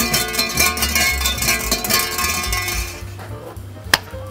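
Shinto shrine bell (suzu) jingling and rattling as it is shaken by its hanging rope, dying away after about two and a half seconds, over background music with a steady bass. A single sharp hand clap near the end.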